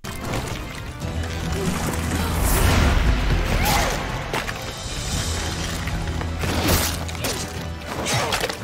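Anime film soundtrack: dramatic music with long low held notes, mixed with crashes and hits from a fight scene.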